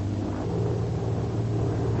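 Steady low drone of the Vought F4U Corsair's Pratt & Whitney R-2800 radial engine in flight, running with the throttle slightly open.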